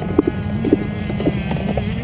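Dirt bike engine running at a low, uneven idle, with a rumble and short knocking blips several times a second.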